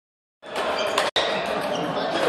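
Ping-pong balls clicking off tables and paddles in a large table tennis hall, over background voices. The sound starts a little under half a second in and has a brief dropout just after one second.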